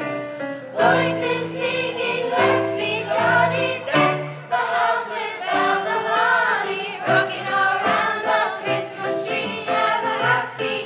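Middle school chorus singing a Christmas carol together, phrase after phrase with short breaths between, with keyboard accompaniment holding chords underneath.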